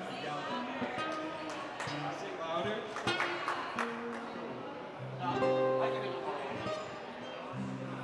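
Acoustic guitar played live, with a man singing along.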